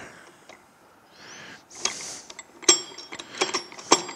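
Steel gears and bearing parts of a hybrid transaxle being fitted by hand. A soft scrape or rustle comes first, then several sharp metallic clicks in the second half as the overdrive gear is set onto its shaft in the case.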